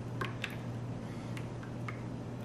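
Coconut milk being poured from a can into a plastic ice cube tray: a few faint, scattered small clicks and drips over a steady low hum.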